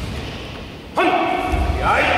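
Several voices shouting together in a sudden loud yell about a second in: the kiai of karate students drilling a technique in unison.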